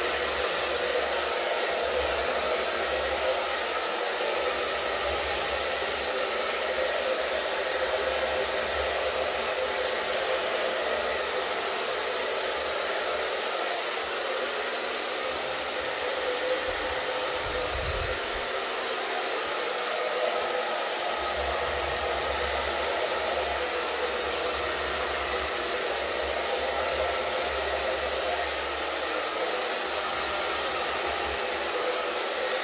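Handheld hair dryer blowing steadily, used to push wet acrylic paint across a canvas in a Dutch pour.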